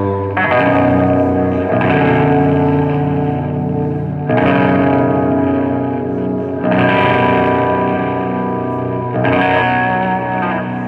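Black-doom metal band playing live: distorted electric guitars hold slow, ringing chords, moving to a new chord about every two to three seconds.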